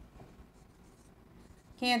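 Faint sound of a marker writing on a whiteboard, then a woman's voice starts speaking near the end.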